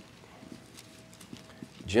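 Faint scattered ticks and rustles of thin Bible pages being leafed through by hand. A man's voice starts right at the end.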